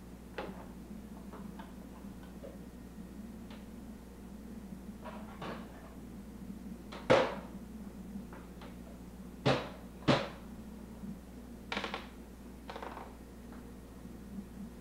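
Plastic toy dishes and toy-kitchen parts knocking and clattering as they are handled and set down: several sharp knocks, the loudest about halfway through, then two in quick succession and a couple of lighter ones near the end.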